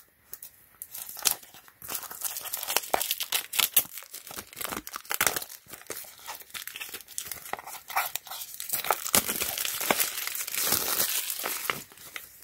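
Clear plastic shrink wrap being torn and peeled off a small cardboard box, crinkling continuously. It starts about two seconds in and is densest near the end.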